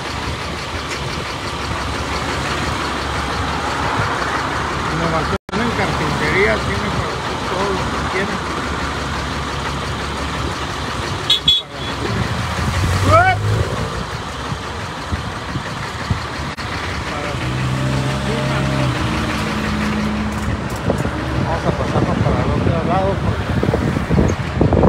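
Street traffic: vehicle engines running and cars passing, with voices in the background. The sound cuts out for an instant about five seconds in.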